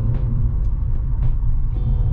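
Road and engine noise heard inside a moving car's cabin at steady speed: a low, steady rumble.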